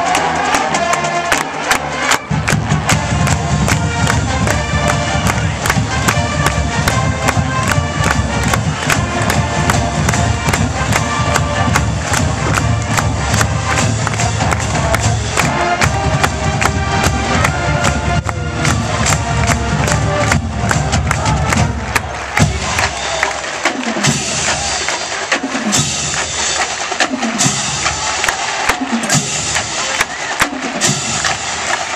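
Marching band playing live on the field: brass over a drumline with steady drum strokes. After about twenty seconds the sound thins, and a low falling note repeats about once a second.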